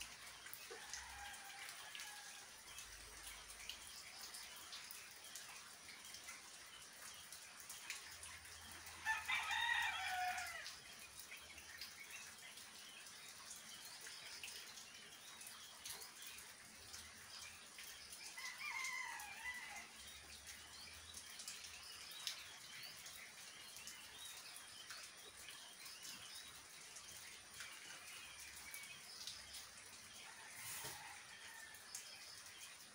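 Faint, steady moderate rain, with a bird calling loudly about nine seconds in and again more faintly near nineteen seconds.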